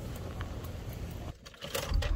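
Steady low background rumble with a few faint small clicks, breaking off into a brief near-silence about a second and a half in.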